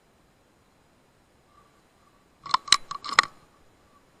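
A quick run of sharp clicks and crunches, about five or six in under a second, a little past the middle; otherwise quiet.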